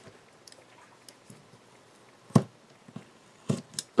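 Handling noise from a folded paper photo block being worked by hand on a table: faint paper rustle with one sharp light knock about two and a half seconds in and a few softer ticks near the end.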